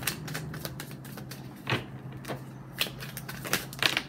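Tarot cards being handled and shuffled by a hand with long fingernails: a run of irregular light clicks and snaps, with a few louder ones in the second half. A steady low hum sits under it.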